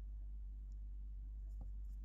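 Faint steady low hum of room tone, with one faint click about one and a half seconds in.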